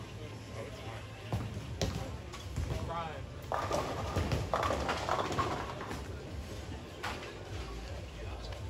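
Bowling alley sounds: a ball rolling down the wooden lane with a low rumble, sharp crashes of pins about two seconds in and again near the end, and voices in the background.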